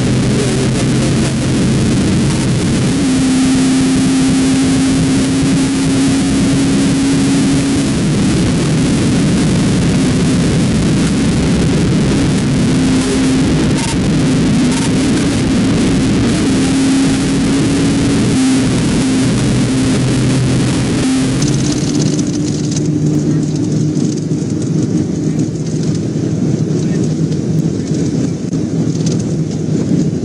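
Police cruiser cabin at pursuit speed, around 80 to 120 mph: loud, steady road and wind noise over a low engine drone. About 22 seconds in, the high hiss cuts off abruptly and the low drone carries on.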